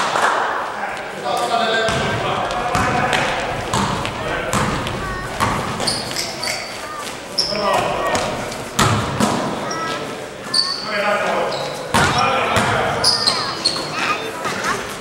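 A basketball game in an echoing gym: the ball bouncing on the court floor, sneakers squeaking, and players calling out to each other.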